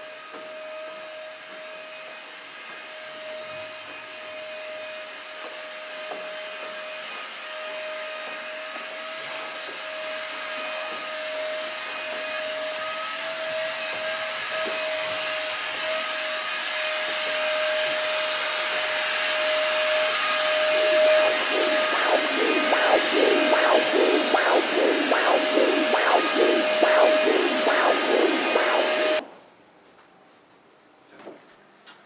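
Upright vacuum cleaner running with a steady whine, growing steadily louder. In the last several seconds a rapid rhythmic whooshing of a few strokes a second joins it, then the sound cuts off suddenly.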